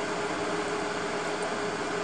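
Ferrari FF's V12 running at low speed as the car rolls past on wet tarmac: a steady hiss with a constant low hum.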